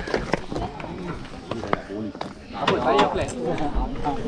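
Several people talking and calling out around the microphone, loudest near the end, with scattered sharp clicks and knocks.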